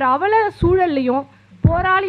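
A woman speaking into a microphone in Tamil, her voice rising and falling in pitch in drawn-out phrases with short pauses between them.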